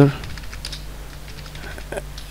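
Typing on a computer keyboard: a quick, uneven run of key clicks, over a low steady hum.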